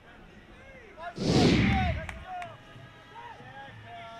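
A sudden loud rushing boom about a second in, a whoosh with a deep low tail that dies away within about a second: a transition sound effect over the cut between plays. Faint voices are heard around it.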